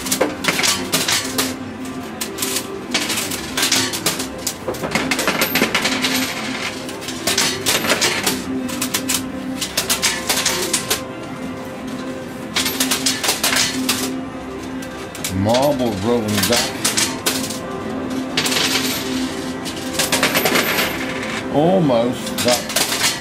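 Coin pusher arcade machine in play: a dense run of metallic clicks and clinks as coins drop onto the playfield and clatter against the coin bed. A steady low tone runs underneath, and a brief warbling sound comes about sixteen seconds in and again at the very end.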